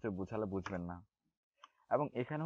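A man speaking, with a few faint keyboard clicks in the pause after he stops, about three-quarters of the way through.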